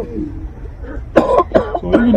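A person coughing: a short, harsh cough about a second in, followed by a smaller one.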